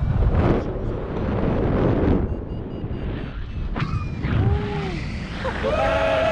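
Wind buffeting the microphone in gusts during a tandem paraglider flight. Near the end a person's voice calls out in long, drawn-out tones.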